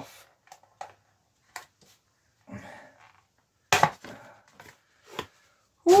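Card packaging tag being cut and pulled off a new Selle Italia Flite saddle: card rustling and scattered sharp clicks. The loudest is a sharp snap a bit under four seconds in.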